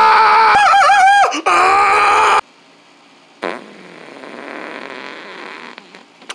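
A loud, high, buzzy fart-like noise that wavers and bends in pitch for about two and a half seconds and then cuts off suddenly. About a second later a soft hiss starts and runs for a couple of seconds.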